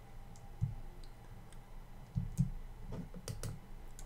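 Scattered clicks of a computer keyboard and mouse, a handful of separate keystrokes spread over a few seconds, with a few soft low thumps among them.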